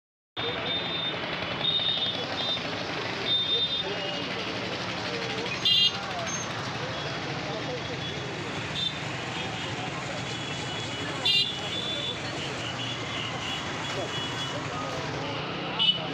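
A group of men talking over one another at close range. Three short, loud bursts cut in at about six seconds, about eleven seconds and near the end.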